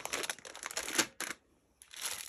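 A plastic packet of wooden buttons being handled: the bag crinkles and the loose buttons inside click against each other in a quick run of small clicks, the loudest about a second in. The sound breaks off briefly near the end.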